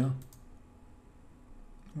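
Faint computer mouse clicks in a quiet pause, with the end of a man's word at the start and his voice coming back at the end.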